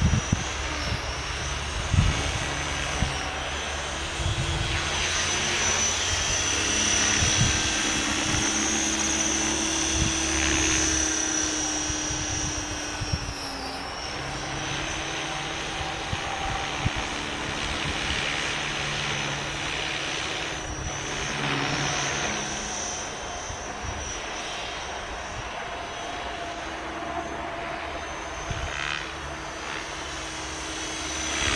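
Align T-Rex 550E electric RC helicopter flying in idle-up, its high headspeed flight mode. The brushless motor and rotor give a steady high whine whose pitch wavers and sags briefly about halfway through, over gusty wind rumble on the microphone.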